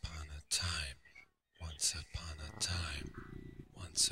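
Chopped, whispery voice fragments from a sound-collage track, with no intelligible words, cut by a brief dead silence a little over a second in. A low buzz runs under the voice near the end.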